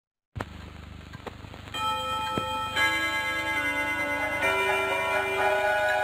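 Cartoon clock sounds: a few slow ticks, then chiming tones that come in one after another from about two seconds in and ring on together.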